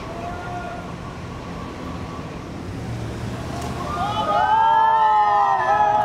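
SUVs of a motorcade pulling out of a parking garage with a low engine rumble. From about four seconds in, several loud overlapping rising-and-falling tones rise over it and become the loudest sound.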